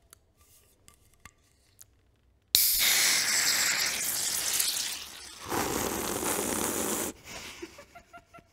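A can of Guinness Draught pulled open: light handling clicks, then a sharp crack of the ring tab about two and a half seconds in, followed by a long hiss of gas rushing out of the nitrogen-widget can, which dips and swells again before stopping abruptly.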